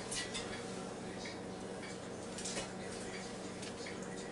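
Faint, scattered light taps and clicks as raw chicken wings are set one at a time into a Power Air Fryer XL basket, over a low steady hum.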